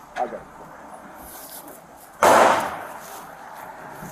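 A single sudden, loud bang about two seconds in, with a short tail that dies away over about a second. Officers take it for a possible gunshot but cannot confirm it.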